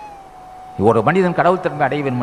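A man speaking Tamil into a microphone in a discourse. A thin, steady high tone holds alone for nearly the first second and keeps on faintly under his voice.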